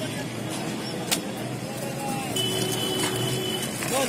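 Busy street noise: motor vehicle engines running steadily, with faint voices in the background, a sharp click about a second in, and a thin steady tone lasting about a second and a half past the middle.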